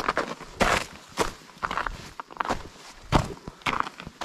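Footsteps of a hiker walking on a rocky trail patched with snow and ice, about two uneven steps a second.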